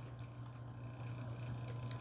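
Soft keystrokes on a Sony VAIO laptop keyboard as a name is typed: a few quiet taps, the clearest near the end, over a low steady hum.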